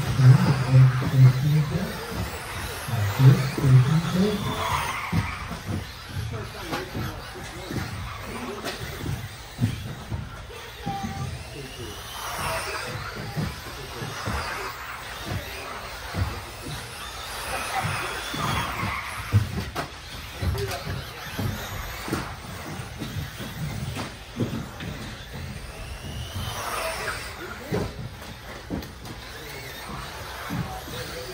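Electric 1/10-scale RC buggies with 17.5-turn brushless motors racing: motor whines sweeping up and down in pitch every few seconds as the cars accelerate and pass, with scattered clicks and knocks from tyres and landings.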